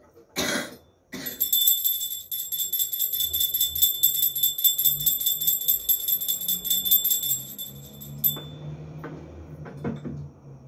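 Handheld brass puja bell (ghanti) rung rapidly and steadily during the aarti, stopping about eight seconds in. A short rasping burst comes just before it starts.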